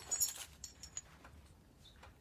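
Metal buckles and rings of a New Tribe Onyx arborist harness clinking, with the nylon webbing rustling as the harness is handled and set down. There is a short burst of jingling in the first half second, then a few lighter clicks.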